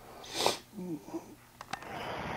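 A man's short sniff about half a second in, then a faint low murmur and two small clicks near the end.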